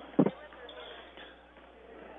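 A basketball being dribbled on a gymnasium's hardwood floor: one clear bounce about a quarter of a second in, followed by faint murmur in the gym.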